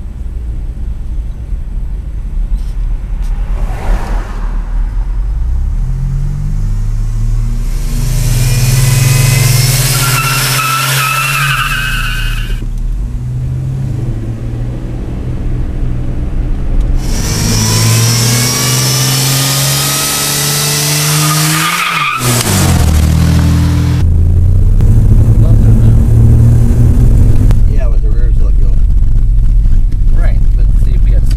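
A turbocharged Buick V6 accelerating hard, its engine note climbing and stepping through the gears. Two long bursts of tyre squeal come about a third of the way in and again past the middle, the second ending abruptly.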